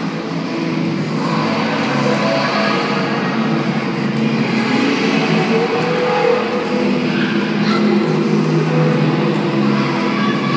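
Music playing with a steady tune, over the continuous rolling rumble of many roller skates' wheels on a hard sports-court floor.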